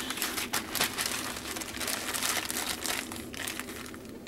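Plastic packets of diamond-painting rhinestones crinkling as they are pushed into a zip-top plastic bag, a dense run of irregular crackles.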